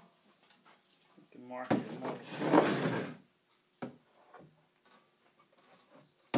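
A level laid on a rough-sawn wooden plank and slid across it: a scrape of about a second, about two seconds in, the loudest sound, then a couple of light knocks as it is set in place.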